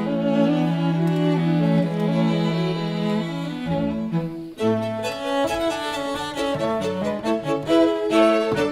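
String octet of violins, violas and two cellos playing live: a low note is held under moving upper parts, then after a short break about halfway the music turns to shorter, more detached notes.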